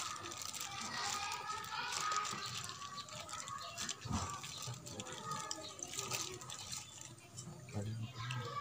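Hands squeezing and crumbling soft boiled cassava in water in a plastic dipper: quiet squelching and dripping of liquid, with a brief click about four seconds in.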